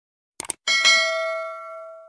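Sound effect of a double mouse click followed by a single bell ding, the notification-bell chime of a subscribe animation. The ding rings on several steady tones and fades away over about a second and a half.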